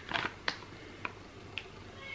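Plastic food packaging handled in the hands: a quick cluster of light crinkles and clicks, then a few isolated soft ticks as the tray is turned over.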